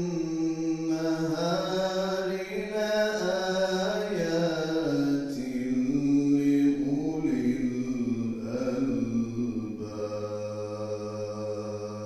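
A man's solo unaccompanied Islamic religious chant, sung through a handheld microphone: long held notes with ornamented slides between pitches, settling on a lower sustained note near the end.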